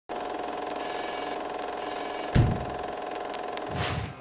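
Produced intro sting: a steady held tone with a deep bass hit about two and a half seconds in, then a rising whoosh at the end.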